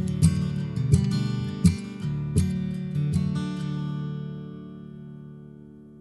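Acoustic guitar playing the closing strums of a song, a handful of chord strums in the first three seconds, then the final chord ringing out and fading away.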